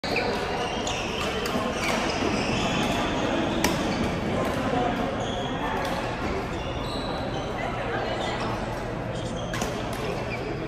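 Busy badminton hall: many players' voices, short squeaks of court shoes on the floor, and scattered sharp racket-on-shuttlecock hits from the courts, the loudest about three and a half seconds in.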